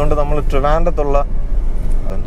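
A person speaks briefly over the steady low road and engine rumble of a moving Renault Triber, heard inside the cabin. The voice stops about a second in, leaving the car's rumble alone.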